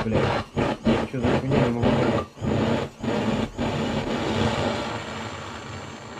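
Portable gas torch burning under a hanging can to heat coffee. The flame runs unevenly, breaking off and catching about twice a second for a few seconds, then settles into a steady hiss.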